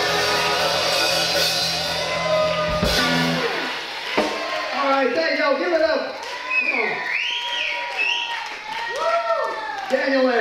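A live blues band's closing held chord, electric guitar ringing over the drums, cut off by a final drum and cymbal hit about three seconds in. Then scattered whoops and shouts from voices as the song ends.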